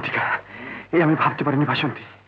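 Only speech: Bengali film dialogue on an old, narrow-sounding soundtrack, spoken in short phrases with brief pauses.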